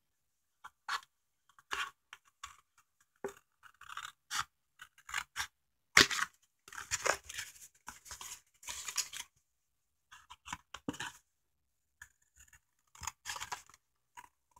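Long flat-bottomed scissors cutting through thin cardboard from a candy box, in irregular runs of short crisp snips with pauses between them. The loudest snip comes about six seconds in.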